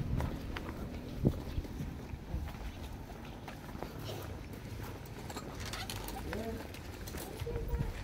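Footsteps on a concrete walkway with indistinct voices in the background and a low rumble on the microphone; a single sharp knock about a second in is the loudest moment.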